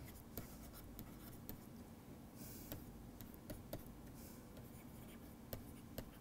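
Faint pen stylus writing on a tablet: scattered light ticks as the tip meets the screen, with a short scratchy stroke about two and a half seconds in, over a low steady room hum.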